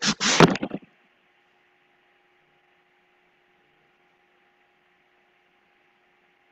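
Handling noise: a hand rubbing and bumping close to the computer's microphone while adjusting the camera, a quick run of scratchy rustles that stops abruptly under a second in. After that only a faint steady electrical hum.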